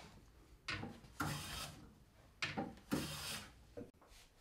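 Metal hand plane pushed along a wooden drawer side, a few scraping strokes each about half a second long as it takes off thin shavings. This is the drawer being planed down a shaving at a time toward a piston fit.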